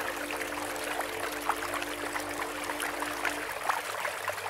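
Running stream water, a steady trickling, splashing rush with small drips, under a soft held music chord that dies away shortly before the end.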